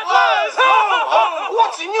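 Several men's voices shouting together in loud, drawn-out cries, in the manner of a chorus of Santas.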